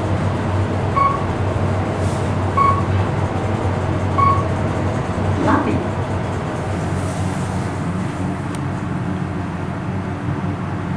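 KONE traction elevator car descending, its ride noise a steady low hum, with four short electronic beeps about one and a half seconds apart in the first half. A brief clunk about five and a half seconds in as the car comes down to the lobby, after which the hum settles lower.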